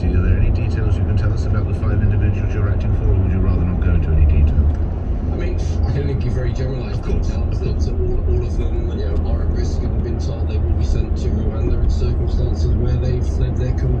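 Steady low road and engine rumble inside a car cruising at motorway speed, with a talk-radio voice playing over it.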